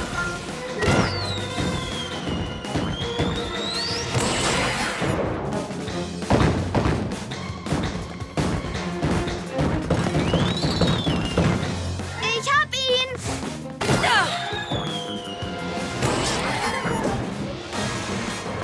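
Cartoon action score with sweeping swoosh effects and several thuds and impacts as balls bounce, plus a short effort vocal at the start.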